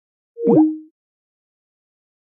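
A short electronic sound effect, about half a second in and lasting around half a second. Two tones slide in opposite directions, one rising and one falling, and it ends on a brief low held note.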